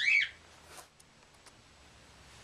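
A pet bird gives one short, loud chirp with quick pitch glides right at the start, followed by a few faint clicks.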